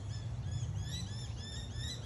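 Birds chirping: a quick run of short, high chirps, several a second and partly overlapping, over a steady low rumble.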